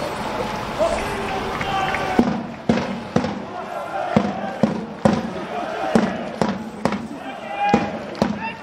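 Football supporters chanting together. About two seconds in, sharp rhythmic beats start, about two a second, and keep time with the chant.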